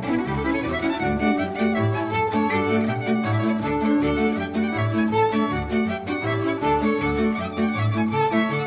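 Instrumental passage of folk string-band music: several violins play the tune over a bowed double bass that marks a steady beat.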